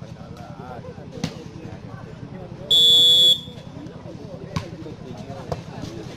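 A referee's whistle blown once, a short shrill blast just under halfway through, signalling the serve. A couple of sharp hits of the volleyball follow, over background crowd voices.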